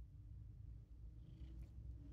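Domestic cat purring softly while being stroked, a low continuous rumble.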